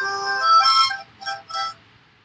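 A child's harmonica played as a breathing exercise: a short run of several held notes that stops shortly before the end.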